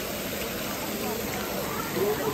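Steady rush of water pouring into a thermal pool, with faint voices in the background.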